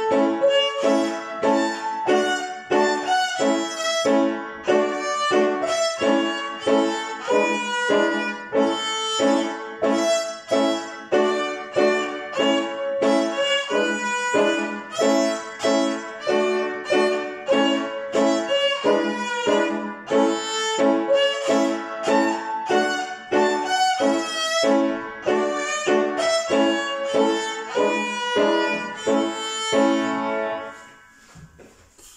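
Solo violin played by a young child: a continuous, brisk line of short, separately bowed notes, with no accompaniment.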